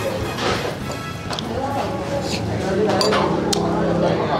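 A spoon and chopsticks clinking against a ceramic soup bowl while eating, a few sharp clinks, over background music.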